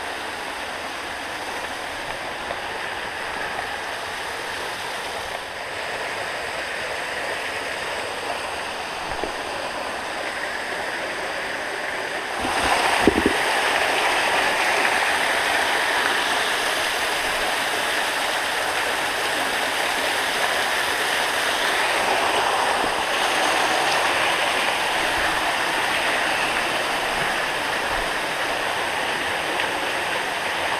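Small waterfall pouring into a plunge pool, a steady rush of falling water that grows louder about halfway through. A brief bump sounds as the rush gets louder.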